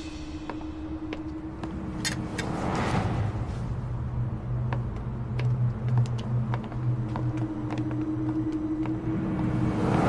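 Footsteps on a paved street, light clicks about every half second, over a low steady hum, with a soft whoosh about two to three seconds in.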